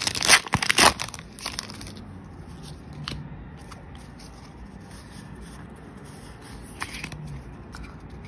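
Foil wrapper of a Pokémon trading-card booster pack being torn open and crinkled by hand, a dense crackling for about the first two seconds. After that it quietens to a few soft clicks of handling.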